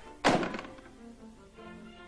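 A telephone receiver hung up hard on its cradle: one sudden thunk about a quarter-second in, followed by soft background music.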